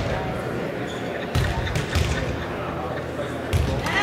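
A ball bouncing on a hardwood gym floor: a few separate thumps that echo in the hall, the first about a second and a half in and the last near the end.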